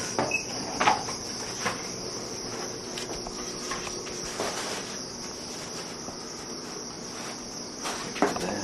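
A few knocks and a light clatter from a thin surfboard template being pulled off a shop rack and carried to the foam blank, the loudest knock about a second in. A steady high-pitched chirring hiss runs underneath.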